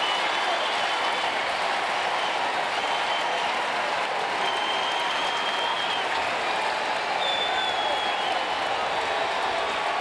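Ballpark crowd applauding a home run: a steady wash of clapping and crowd noise.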